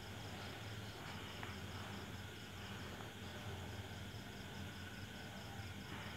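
Quiet room tone with an insect chirping in a fast, steady, high-pitched pulse over a low steady hum.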